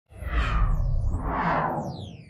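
Whoosh sound effect of an intro logo sting: a deep rumble under two swelling rushes of noise about a second apart, with thin high tones sweeping up and down, starting to fade near the end.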